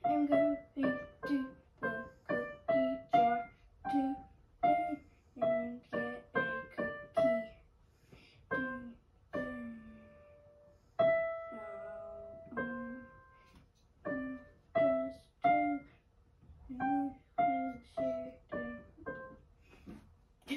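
Digital piano played one note at a time in a simple, slow melody, the notes struck at an even pace. Midway there is a sparser stretch where a couple of notes are held and left to ring before the steady notes resume.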